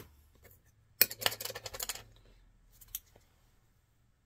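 Metal and plastic extruder die discs clicking and rattling as they are handled and set down on a wooden table. There is a sharp click about a second in, a quick run of small clicks, then one more click near the end.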